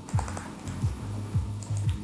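Scattered clicks of a computer keyboard and mouse, over background electronic music with a deep beat about twice a second.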